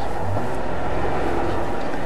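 A pause with no speech, filled only by a steady hiss with a faint low hum underneath: the background noise of the sermon recording.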